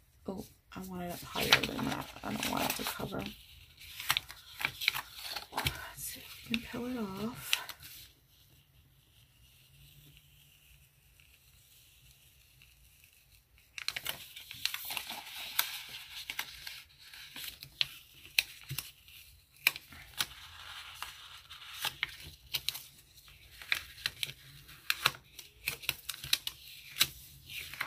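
Sticker sheets and paper planner pages crinkling and rustling as stickers are peeled off their backing and pressed down by hand, in clusters of small crackles and clicks. A quiet pause of several seconds falls in the middle.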